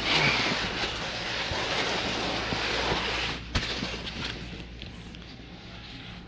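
Cardboard box of a well tank being handled, giving a rustling scrape that drops off about three seconds in, followed by a single knock.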